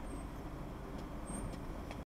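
Van's engine running at low speed, a steady low rumble heard from inside the cab.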